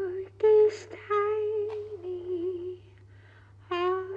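A woman's voice singing wordless, hummed notes on nearly one pitch, each held up to a second with slight bends. The voice drops back to quiet for about a second near the end before another note starts. A faint steady low hum sits underneath.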